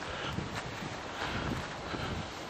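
Wind on the microphone over steady street background noise, with soft low thumps as the handheld camera moves.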